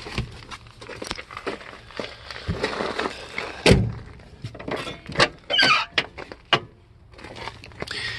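Scattered knocks, clicks and rattles from handling things and moving about in and around a junked car, with one sharp loud knock a little under four seconds in.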